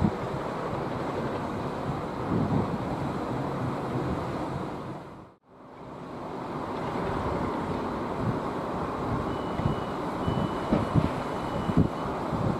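Wind buffeting the microphone over a steady rumble, fading out to nothing about five seconds in and back up again. For the last few seconds a thin, steady high beep sounds, broken once.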